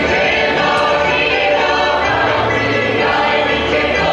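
A group of voices singing a South Slavic folk song together in chorus.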